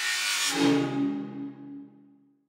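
Intro jingle sound effect: a whoosh that settles about half a second in into a held musical chord, which fades away near the end.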